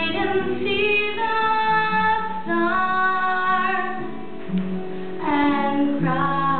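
Two voices, one female, singing a slow song in long held notes, with light guitar accompaniment. The singing eases into a brief lull about two-thirds of the way through before a new phrase comes in strongly.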